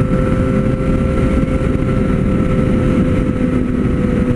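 Triumph Street Triple 765's three-cylinder engine cruising at a steady highway speed, holding one even pitch, under heavy wind rumble on the microphone.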